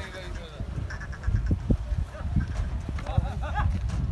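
Hooves of a bull thudding on dry dirt as it is pulled along on a rope, a few dull knocks about a second in, over a steady low rumble.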